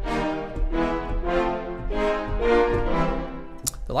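Orchestral Tools Layers full-orchestra staccato chord patch played from a keyboard: a run of short, brass-heavy major chords struck about every half second.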